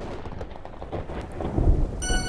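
Rain-and-thunder sound effect opening a dance track: a hiss of rain with scattered crackles, starting suddenly, and a low rumble of thunder swelling about a second and a half in.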